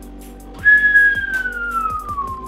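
A person whistling one long note that slides steadily down in pitch, starting about half a second in, over background music with a steady beat.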